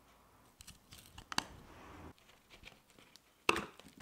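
Faint clicks and light rustles of steel hand-plane parts being handled, with a sharper click about three and a half seconds in.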